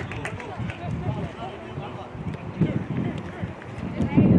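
Distant, unintelligible voices of players and spectators calling out across an outdoor soccer pitch, with a few faint knocks in the first second.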